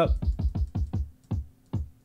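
An electronic kick drum one-shot sample is triggered in a rapid run of about ten hits in the first second, then twice more, more slowly. Each hit is a short boom that drops quickly in pitch. The kick is being auditioned while it is retuned to match the track's key.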